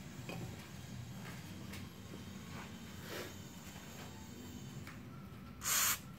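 A short hiss, about half a second, near the end: an aerosol can of penetrating lubricant sprays through its straw onto a scooter's rear brake caliper bolt, soaking it so the bolt will not seize when it is undone.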